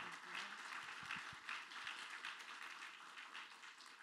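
Audience applauding, the clapping fading away.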